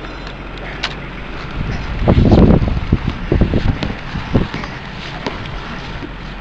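Wind buffeting the microphone outdoors over a steady low rumble, with a loud rough gust about two seconds in and a few short sharp buffets after it.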